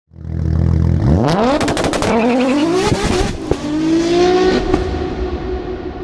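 Car engine idling briefly, then revving up through gears: the pitch climbs, drops at each shift and climbs again, with sharp crackles during the first pull. It settles into a steady tone that fades toward the end, used as an intro sound effect.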